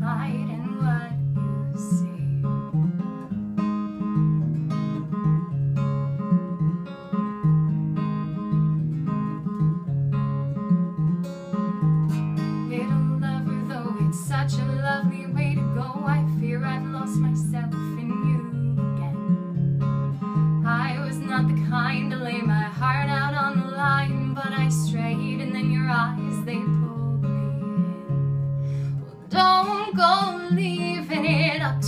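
Acoustic guitar strummed in a steady rhythm while a woman sings a folk song. Her voice comes through most strongly in the second half.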